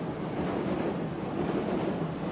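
Steady outdoor noise of a city street and a gathered crowd, with wind on the microphone.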